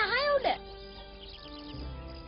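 A wavering, meow-like cry that ends about half a second in, followed by soft background music with long held notes.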